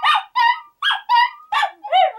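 Small terriers "singing": a run of short, wavering yips and howls, about three a second, each call bending up and down in pitch.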